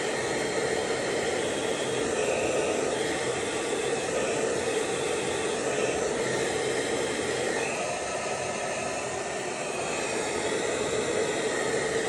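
Handheld hair dryer running steadily, a constant rushing blow with a low hum, as it is worked through the hair to dry it.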